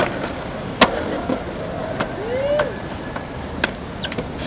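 Skateboard on a concrete ledge and pavement: wheels rolling, with sharp clacks of the board striking. One clack comes at the start, a louder one just under a second in, and lighter ones later.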